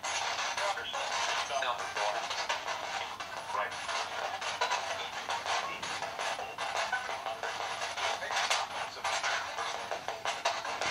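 Spirit box sweeping through radio stations, giving choppy static broken by brief snatches of broadcast voices and music through its small, thin-sounding speaker.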